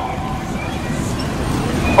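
Steady city street traffic noise: a low, even rumble of passing cars and buses.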